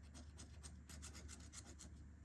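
Coin scratching the latex coating off a paper scratch-off lottery ticket, a faint run of rapid short strokes.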